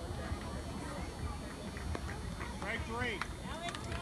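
Spectators' voices talking in the background over a low rumble of wind on the microphone, with a few faint knocks.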